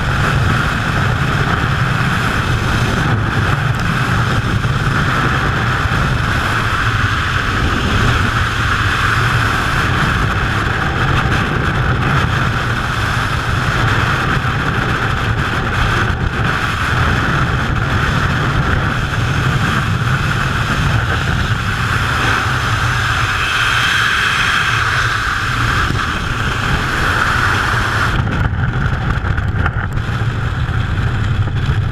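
Loud, steady freefall wind rushing over a helmet-mounted camera's microphone during a skydive. Near the end the high hiss drops away as the parachute opens and the fall slows.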